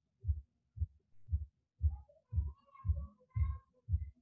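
Soft low thuds repeating about twice a second, with a few faint thin tones in the second half.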